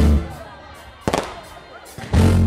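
Live dancehall stage show through the PA: a deep bass hit cuts off just after the start, the music drops away, and a single sharp bang sounds about a second in.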